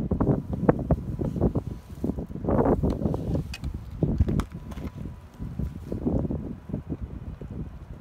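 Gusty wind buffeting the microphone: an irregular low blustering that swells and drops with each gust.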